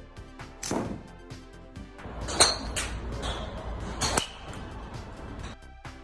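Golf swings over background music with a steady beat: a club swishing through the air just under a second in, then sharp club-on-ball strikes, the loudest about two and a half seconds in and another about four seconds in.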